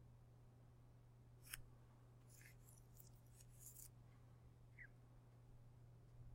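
Near silence: a steady low hum, with a few faint, short, high-pitched scratchy clicks around the middle.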